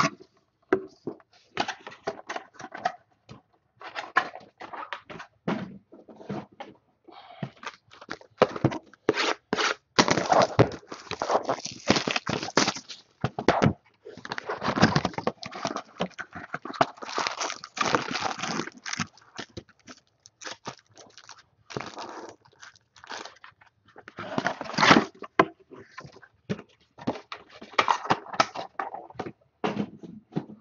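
Cardboard trading-card boxes being opened by hand and their wrapped card packs pulled out and stacked: irregular bursts of rustling, crinkling and scraping with short pauses between.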